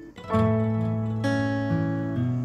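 Background music of strummed acoustic guitar chords, coming in a moment after the start with a few chord changes.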